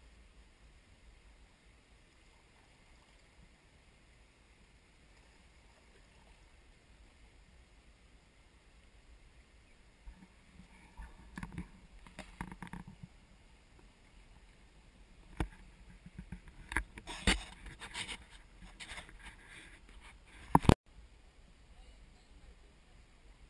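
Canoe paddling close by: after a quiet stretch, a run of paddle knocks and splashes starts about halfway through and grows louder, ending in one sharp click just before the end.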